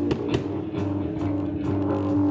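Live rock band playing: an electric guitar holding a ringing chord over bass guitar and a drum kit beating out a steady rhythm with cymbal and snare hits.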